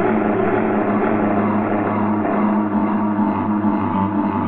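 A steady low drone of several held tones, without breaks or strokes.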